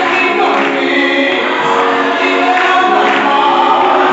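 Gospel singing by a group of voices, led by a woman singing into a microphone, with held notes sung together.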